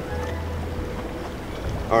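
Low, steady wind rumble on an outdoor microphone by open water, with a faint held tone of background music.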